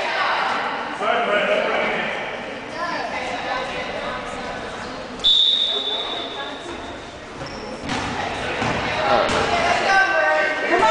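Spectators' voices and a basketball bouncing on a hardwood gym floor. About five seconds in, a referee's whistle gives one short, sharp, steady blast.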